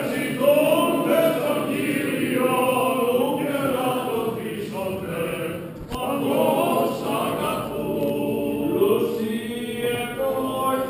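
Greek Orthodox Byzantine chant sung by a group of voices during vespers, with a brief click about six seconds in.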